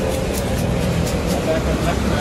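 Busy street ambience: a steady low rumble of road traffic with indistinct background voices.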